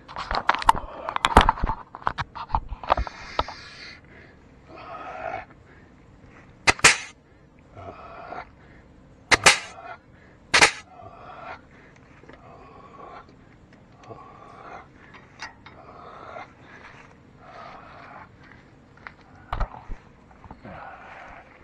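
Air-powered grease gun firing in short, sharp bursts as grease is pumped into the tractor's fittings: a quick cluster at first, then single bursts, three in the middle and one near the end. Softer repeated rasping noises come in between.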